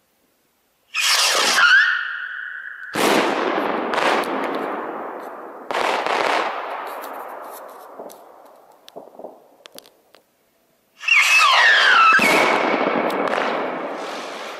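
Firework rockets with whistling motors (perchlorate and sodium salicylate fuel) shriek as they climb, the whistle gliding and then holding steady. Then their shells burst in three loud bangs about a second or two apart, each fading away slowly, with scattered crackle after. About eleven seconds in, another rocket whistles up and a further bang follows.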